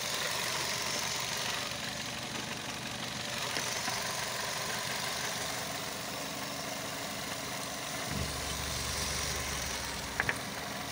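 Chevrolet Aveo's 1.2-litre four-cylinder petrol engine idling steadily, heard up close in the engine bay. A deeper steady hum joins in about eight seconds in.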